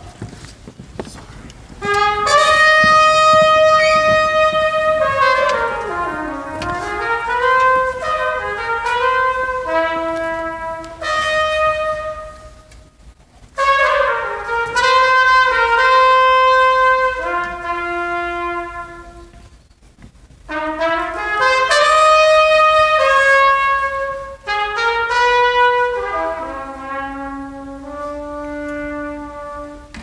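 Jazz big band playing a slow piece led by its brass, held chords in three long phrases with short breaks between them, after a quiet first two seconds. In the first phrase the line dips in pitch and climbs back. Heard through a cell phone's microphone.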